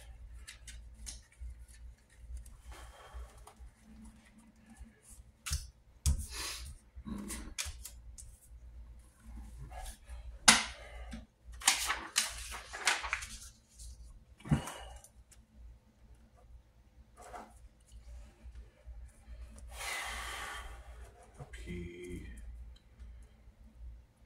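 Playing cards and paper being handled on a desk: a string of irregular sharp taps and slides as cards are put down and picked up, a longer rustle of paper about twenty seconds in, and pen scratching on paper near the end.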